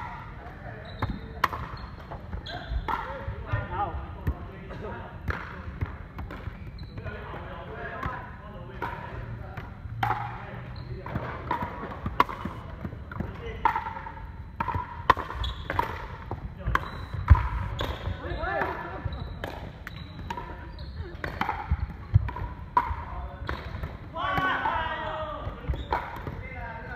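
Pickleball paddles striking a hard plastic ball, and the ball bouncing on a wooden court, making sharp pops at irregular intervals through a rally.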